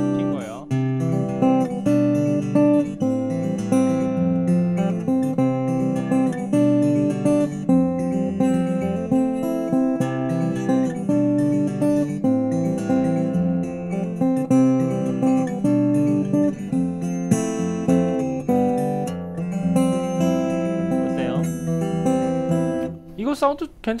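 McPherson Sable carbon-fibre acoustic guitar with a basket-weave carbon top, strummed in full chords and heard through its pickup and an AER acoustic amplifier. The strumming stops about a second before the end.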